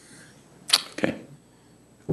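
A short breathy rush of air, then a quiet spoken "okay" about a second in.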